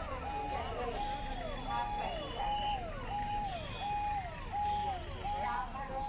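A vehicle's electronic siren sounding a repeating call: a held tone that drops away, about every three-quarters of a second, over crowd chatter.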